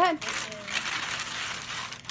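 Wrapping paper being torn and ripped off a gift by hand: a run of crackling, rustling rips.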